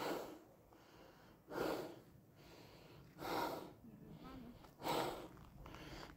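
A person breathing hard close to the microphone: four noisy breaths about a second and a half apart, with quiet between them.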